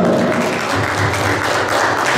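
Small audience applauding: a steady round of hand clapping.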